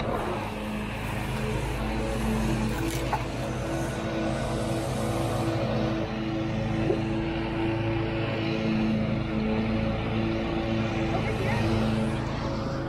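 A steady machine hum that holds one fixed pitch throughout, over a low wash of background noise.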